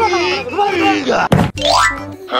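Comedy sound effects over a backing music beat: a short vocal sound, then a sharp hit about 1.3 seconds in, followed by a quick rising boing-like glide.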